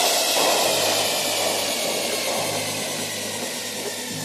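Breakdown in a progressive psytrance track with the beat dropped out: a wash of white noise fades slowly over a low held tone, with a faint falling sweep above.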